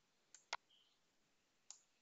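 Faint computer mouse clicks: two close together about half a second in, then one more near the end.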